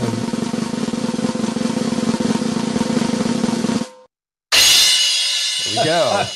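A recorded snare drum roll sound effect, played over the video call, rattles steadily and then cuts off abruptly about four seconds in. After half a second of silence, a loud ringing crash closes the roll, and a voice starts over its ring near the end.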